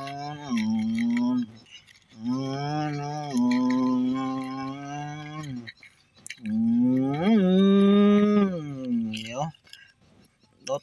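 A man's voice drawing out three long held tones, each a few seconds long with short breaks between. The last one swoops up in pitch, holds, then falls away just before the end.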